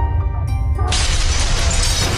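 Channel intro music with a steady deep bass pulse and held notes. About a second in, a loud shattering sound effect bursts in and carries on over the music.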